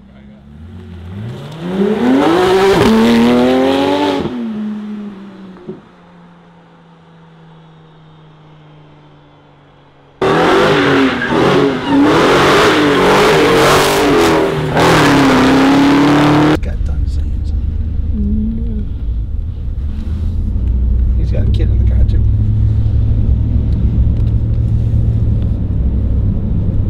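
A Porsche 911's flat-six pulls away and accelerates hard, its revs climbing steeply, then fades. After a quiet stretch, a Dodge Challenger's V8 revs and accelerates loudly for about six seconds and cuts off suddenly. A steady low rumble of a car driving, as heard from inside the car, follows.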